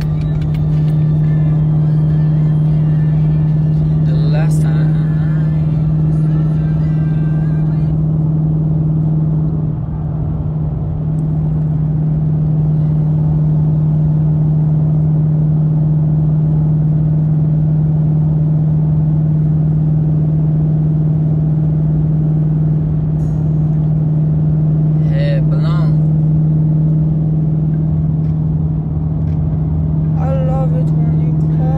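Steady low drone of a car driving, engine and road noise heard from inside the cabin, with a constant low hum under it.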